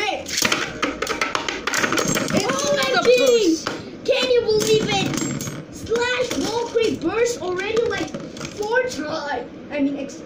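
Beyblade spinning tops launched into a plastic stadium, clashing and rattling with rapid clicks for the first few seconds. A child's excited voice calls out over the battle throughout.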